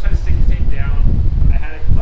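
A voice talking loudly and continuously over a steady low hum.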